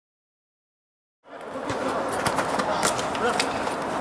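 Silent for about the first second, then the live sound of an indoor small-sided football match fades in: a steady crowd-and-hall noise with players' voices and several sharp knocks of the ball being kicked.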